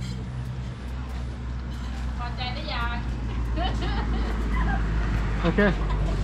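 People talking briefly over a steady low hum.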